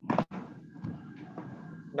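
Background room noise through an open video-call microphone, starting with a short, loud sound and carrying a faint steady tone.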